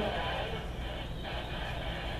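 Amateur Radio Newsline bulletin audio playing through a small speaker, thin and band-limited like radio audio.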